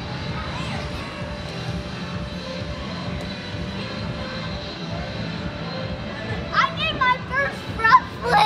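Steady low hum of a large indoor hall, with background music under it; about a second and a half before the end, a child's high voice calls out several times.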